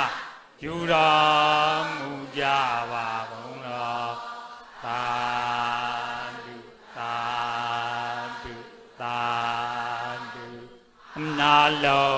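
Buddhist devotional chanting: a male voice intones a recitation in about six long, drawn-out phrases of roughly two seconds each, held on steady notes with short breaks between them.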